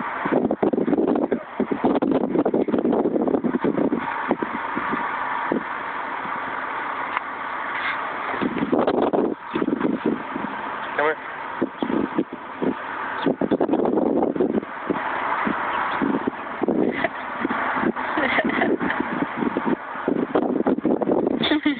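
Indistinct voices, not clear enough to make out words, over a steady outdoor noise.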